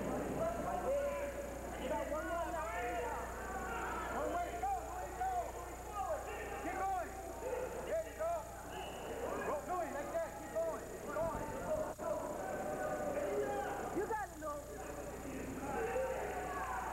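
Many voices shouting and yelling over one another in short, overlapping calls, the crowd at a full-contact karate bout, with a sharp click about twelve seconds in. A steady low hum from the tape recording lies underneath.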